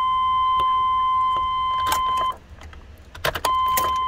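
A steady, high electronic warning tone from the truck's dash sounds while the ignition is on. It cuts off a little past halfway as the key is switched off, a few clicks of the ignition key follow, and the tone comes back as the ignition is switched on again. The ignition is being cycled to recalibrate the speedometer needle.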